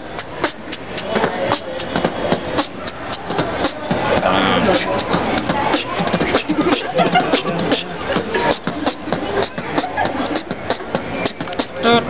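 Human beatboxing: a voice making a fast, steady beat of percussive mouth clicks and drum-like hits.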